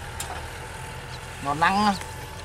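Kubota 6040 tractor's diesel engine running steadily while pulling a disc plough through soil, a low even rumble that sounds light and unstrained under the load. A brief voice cuts in near the end.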